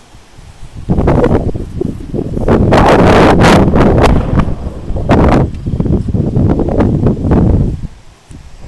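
Wind buffeting the microphone in loud, rumbling gusts. It starts about a second in and drops away just before the end.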